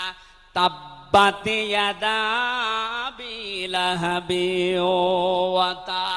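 A man's voice chanting in long, drawn-out melodic phrases with wavering, held notes, starting after a short pause: a preacher breaking from speech into sung recitation in the middle of a sermon.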